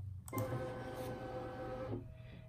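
Brother Luminaire embroidery unit's motors driving the hoop carriage to a new position: a steady, even mechanical whine that starts a moment in and stops just before the end.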